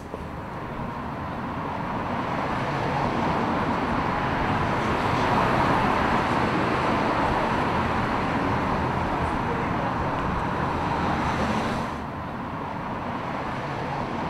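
City street traffic: a steady wash of passing cars, a little louder mid-way, dropping lower about twelve seconds in.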